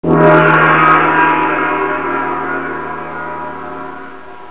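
A single gong-like metallic hit, used as an end-logo sting, rings out from a sudden start and dies away slowly, many ringing tones sounding together.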